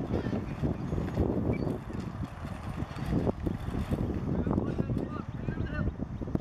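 Pedal-powered rover crossing rough, rocky ground: a dense rumble of its wheels on gravel and rock, with irregular knocks and rattles from the frame.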